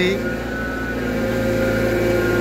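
Hydraulic excavator's diesel engine running steadily: a hum with a few held tones that grows a little louder as the machine digs.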